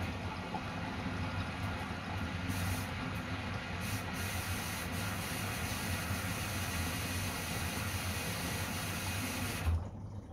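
Water spraying into the drum of a Samsung front-loading washing machine as it fills, a steady rush over a low hum. The inflow cuts off suddenly near the end with a brief thump.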